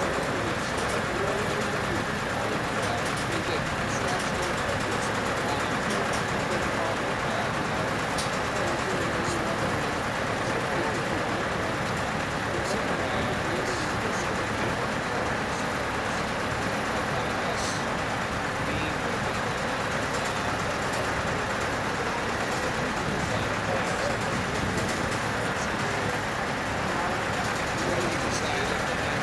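Steady engine noise from the heavy haulage equipment moving the steel bridge span, with indistinct voices in the background.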